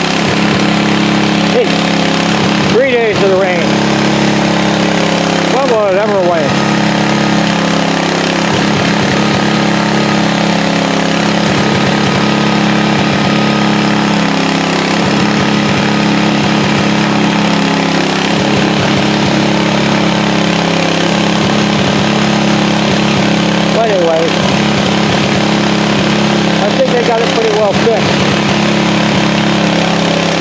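A large engine running steadily at a water main repair site, with brief voices over it now and then.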